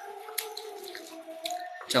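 Wet mouth sounds of chewing food, with a few soft smacks and clicks, over a faint steady background tone.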